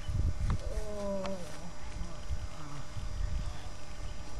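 A person's drawn-out wordless vocal sound, falling in pitch about a second in, over a constant low rumble.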